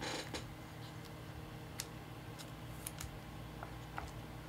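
Trading cards and rigid plastic top loaders being handled on a table: a short rustle at the start, then a few sharp light clicks and taps as the card and plastic knock together, over a steady low hum.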